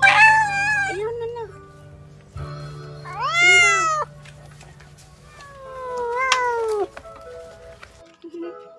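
Domestic cat yowling at an intruding neighbour's cat in a territorial standoff: three long drawn-out yowls, one at the start, one rising then falling about three seconds in, and a long falling one near the middle to late part, over background music.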